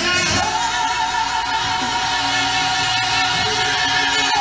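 Live gospel song: a mass choir and band with a soloist holding one long, wavering high note for about two seconds.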